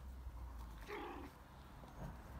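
A puppy gives one short, high yelp about a second in, over a steady low rumble.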